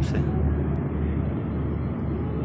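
Steady low rumbling background noise, even throughout, with most of its weight in the deep bass.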